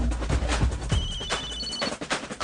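A mobile phone's electronic ringtone: a short tune of high beeps lasting about a second, starting about a second in. It plays over background music with a regular beat and bass.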